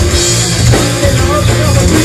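A rock band playing loud live: a drum kit driving the beat under electric guitars and bass.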